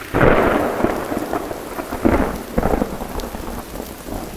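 Rain falling steadily in a forest, with a low rumble underneath. It starts suddenly, is loudest at the start, and swells again a few times.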